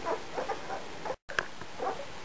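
Nine-day-old German shepherd puppies nursing, giving short, high squeaks and whimpers several times. The sound cuts out briefly just after a second in.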